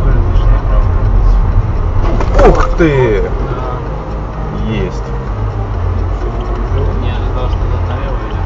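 Steady low rumble of a moving vehicle with a person's voice over it; about two and a half seconds in, a loud pitched sound falls sharply in pitch.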